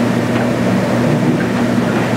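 Steady low hum with an even hiss underneath: the meeting room's background drone from electrical hum or ventilation.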